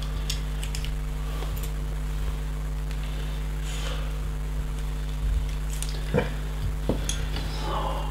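Small plastic Lego bricks clicking and rattling as hands pick them up, handle and fit them, in scattered light clicks with a couple of sharper ones about six and seven seconds in. A steady low electrical hum runs beneath.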